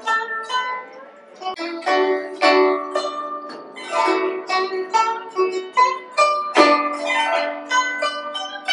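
Guzheng (Chinese plucked zither) played solo: a continuous run of plucked notes that ring on. There is a brief softer lull about a second in, and a loud, low note stands out about two-thirds of the way through.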